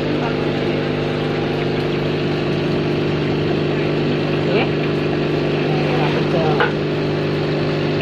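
Steady low hum of aquarium air pumps and tank equipment, unchanging throughout, with faint voices in the background.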